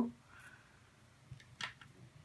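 Quiet handling of a small metal bead and chain on a leather cord between the fingers, with two faint sharp clicks in the second half.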